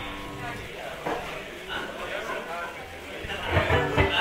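A quiet lull in a live band set: indistinct voices in a hall with faint stray instrument notes, and a couple of low bass notes near the end.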